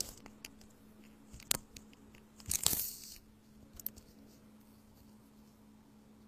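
A few sharp clicks, the loudest about a second and a half in, then a short rustling, tearing noise just before three seconds, over a steady low hum.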